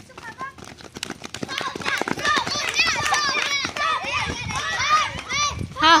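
Children hopping on one leg across bare dirt ground, their footfalls in quick irregular thumps, and from about a second and a half in, many high children's voices shouting and cheering over each other through the rest of the race.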